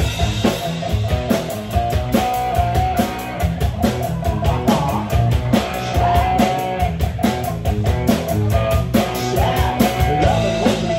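Live rock band playing: electric guitars over a drum kit keeping a steady beat.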